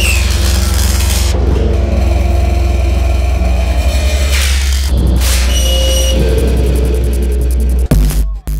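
Electronic dance music played live on a Eurorack modular synthesizer: a heavy sustained bass drone under noise sweeps that rise and fall twice. The sound cuts out briefly near the end.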